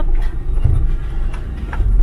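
Car driving over a rough road of large stones, heard from inside the cabin: an uneven low rumble of tyres and suspension, with a couple of knocks as the wheels hit stones.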